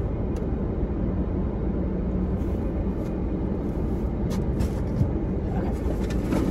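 Steady low hum of a car idling, heard inside its cabin, with a few light clicks and rustles of things being handled.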